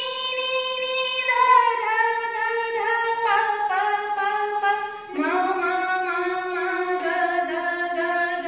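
A woman singing the descending line of a Hindustani sargam alankar, each swar repeated four times, stepping down the scale note by note towards Sa.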